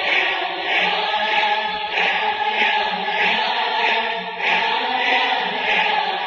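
A group of voices chanting a devotional bhajan to Rama, held sung notes over a steady beat.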